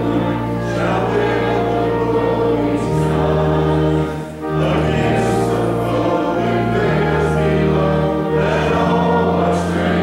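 A congregation sings a hymn in held notes over a steady, sustained organ accompaniment, and the chord changes every couple of seconds. There is a brief break at a line ending a little over four seconds in.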